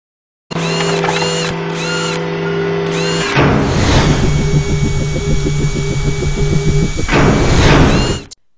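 Produced sound effects for an animated logo intro: a steady electronic hum with four repeated arching chirps, then a rushing sweep about three seconds in, giving way to a fast pulsing mechanical whir, and another rushing sweep near the end.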